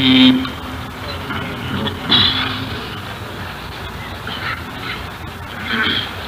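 A male Qur'an reciter's long held note cuts off just after the start. Then a live audience calls out and murmurs in scattered bursts, with one clear call about two seconds in, over the steady hiss of an old recording.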